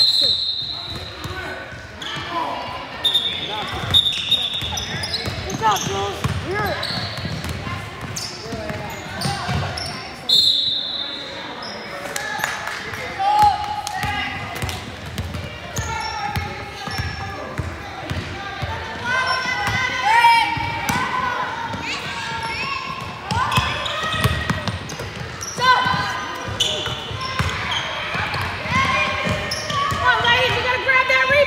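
A basketball bouncing on a hardwood gym floor during play, mixed with indistinct voices of players and spectators, all echoing in a large hall.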